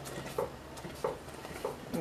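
Wooden spoon working thick cocoa fudge in a stainless steel pot: faint soft scraping with a few light knocks of the spoon against the pot.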